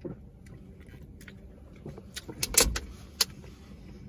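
Drinking from a plastic water bottle and handling it: a series of sharp clicks and crinkles of the thin plastic, loudest about two and a half seconds in.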